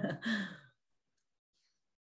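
A man's voice trailing off in a breathy laugh in the first half second, then near silence on a noise-gated call line, broken only by a faint breath about halfway through.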